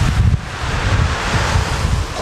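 Wind buffeting the microphone in irregular gusts, a loud low rumble over a steady rushing hiss.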